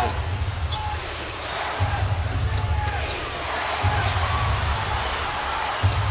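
NBA game broadcast during live play: steady arena crowd noise with a low, regular thumping about every two seconds, a basketball being dribbled, and short squeaks like sneakers on the hardwood court.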